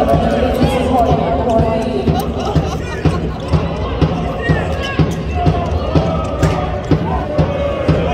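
A group of sports fans chanting together in a large hall over a steady low drumbeat of about two thuds a second.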